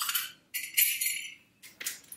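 Small metal hardware jingling and clinking as it is handled: a steel garage-door slide lock and its self-tapping screws, in three short bursts.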